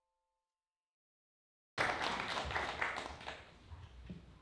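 Complete silence for nearly two seconds, then audience applause that starts abruptly and fades away.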